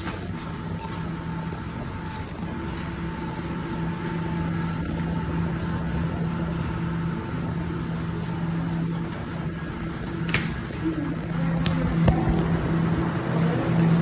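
Steady hum of cleanroom machinery and air handling, with a few held tones, and a few sharp clicks and knocks in the last few seconds.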